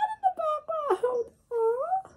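A high-pitched human voice making a string of short wordless wailing cries, the last one rising and then falling in pitch.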